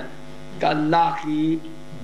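Steady electrical mains hum, a buzz with many evenly spaced overtones, carried on the microphone audio. A short phrase of a man's speech sounds over it from a little after half a second in.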